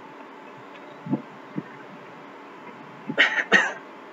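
A man clearing his throat twice in quick succession near the end, over a low steady room hiss.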